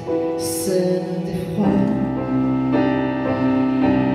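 Live band music: sustained keyboard notes with a singing voice, joined about a second and a half in by a fuller, lower accompaniment.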